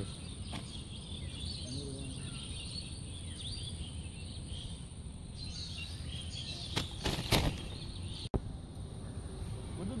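Quiet outdoor ambience with faint bird chirps and a steady high insect drone, broken about seven seconds in by a couple of brief knocks from handling fishing tackle.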